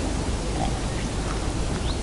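Steady outdoor background noise: an even rushing hiss with a low rumble underneath and no distinct events.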